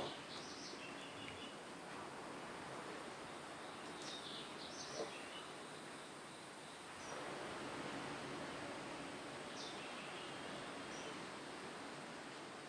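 Quiet background ambience: a steady faint hiss with a few brief, faint high chirps, typical of birds outside, near the start, about four seconds in and again near ten seconds.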